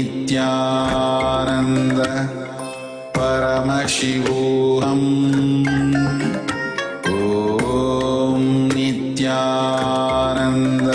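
Devotional mantra chanted to music, in long sustained sung phrases that start over about every four seconds.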